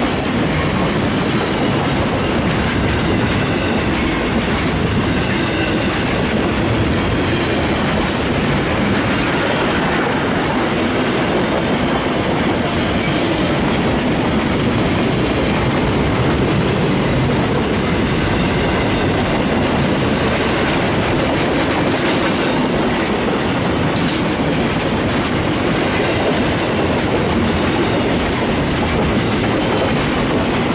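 Steel wheels of a long train of loaded flatcars rolling past on the rails: a loud, steady, unbroken rolling noise.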